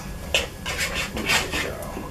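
Metal spoon scraping and clinking against a stainless steel pot in several quick strokes, as sticky marshmallow fluff is scraped off into the pot.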